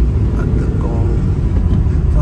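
Steady low rumble of a car driving, heard from inside the cab: engine and road noise. A brief snippet of voice comes about a second in.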